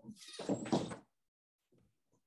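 A door moving: one noisy rush lasting about a second, with a faint high squeak running through it.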